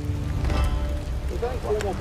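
Wood campfire crackling with a few sharp pops over a low rumble; voices begin talking about two-thirds of the way through.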